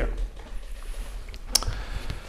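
A pause in a man's speech: quiet room tone with a steady low hum, and one sharp click about one and a half seconds in.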